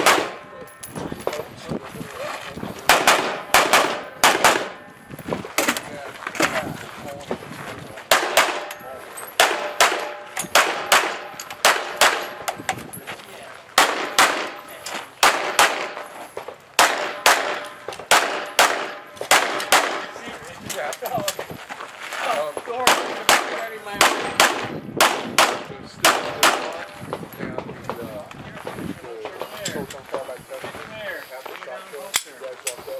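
Rapid gunfire from a competitor's rifle and then his pistol, fired in quick strings of two to five shots with short pauses between positions, each shot sharp and ringing. Hits clang on steel targets among the shots.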